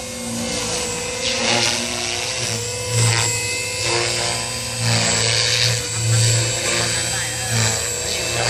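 JR Forza 450 radio-controlled helicopter in flight, its rotor and motor giving a steady high whine, with the sound swelling and fading unevenly.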